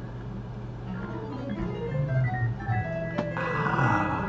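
Software piano and organ sounds from one HALion 6 virtual instrument playing two different MIDI parts at once: a run of falling notes, then held notes near the end.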